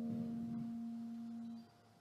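Gamelan metallophone notes, a low one and a higher one, ringing on and slowly fading. They stop suddenly near the end.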